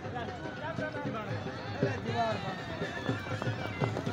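Voices of a crowd calling along a horse track, with the thudding hoofbeats of a galloping horse near the end.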